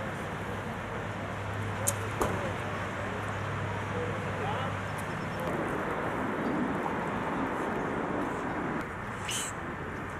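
Indistinct distant talking over a steady outdoor background rumble, with two sharp clicks about two seconds in and a short hiss near the end.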